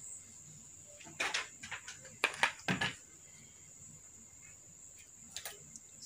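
Stiff gathered net and taffeta rustling and crinkling as they are handled and pinned, a few short crinkles between about one and three seconds in and one more near the end. A faint steady high-pitched whine runs underneath.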